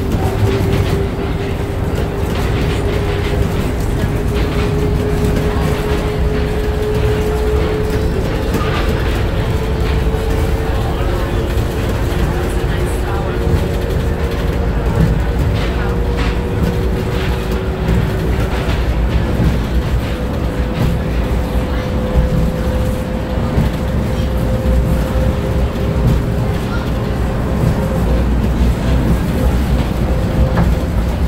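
Monorail train heard from inside the car while running: a steady low rumble with a thin electric motor whine that climbs slowly in pitch as the train gathers speed.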